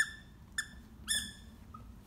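Australian Shepherd whining in short, high-pitched cries, three in the first second and a faint fourth near the end: the dog is upset because the other dog took its stuffed duck toy.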